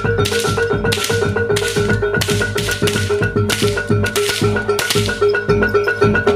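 Jaranan gamelan music: drums under a fast repeating pattern of metallophone notes, with bright crashing strokes repeated until about five seconds in.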